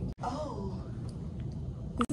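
A person's short vocal sound with falling pitch, like a sigh, in the first half-second, followed by low room noise.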